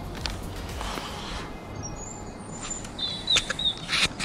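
Quiet outdoor ambience with a few soft clicks and rustles, and a bird giving a short, thin whistled call about three seconds in.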